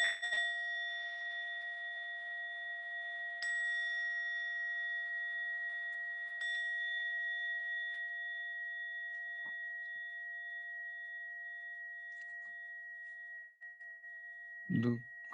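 A meditation bell struck three times, about three seconds apart. Each strike rings on in several clear tones that fade slowly, and the last one is still ringing at the end.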